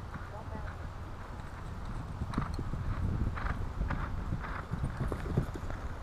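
Hoofbeats of a horse coming across grass toward a log fence, growing louder and closer from about two seconds in.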